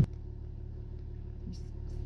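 Low, steady rumble of a car driving, heard from inside the cabin.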